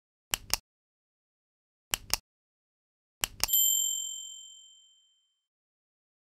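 Subscribe-button animation sound effect: three quick double mouse clicks, about a second and a half apart, then a bright bell ding right after the last pair that rings out and fades over about a second and a half.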